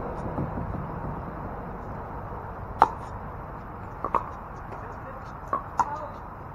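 Pickleball paddles striking a plastic ball in a rally: one sharp pop about three seconds in, the loudest, then a quick pair of pops just after four seconds and two more near the end.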